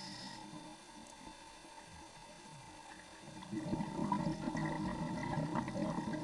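Faint underwater ambient noise with no clear single event, very quiet at first and growing to a soft rushing hiss after about three and a half seconds.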